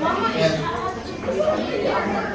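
Speech only: a man talking through a handheld microphone, with chatter from other people in the room.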